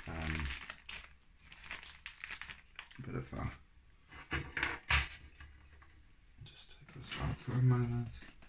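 Clear plastic bag crinkling as small plastic model-car wheels are handled and taken out, then light clicks of the wheels being set down on a wooden desk. A few short murmurs from the modeller come in at the start and near the end.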